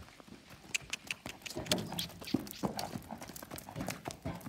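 Hooves of an Arabian-Saddlebred cross mare trotting on gravel under a rider: a quick, uneven run of sharp clops.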